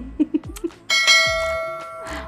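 A bell chime sound effect strikes about a second in: one bright ding with many ringing overtones that holds steady pitches and fades away slowly.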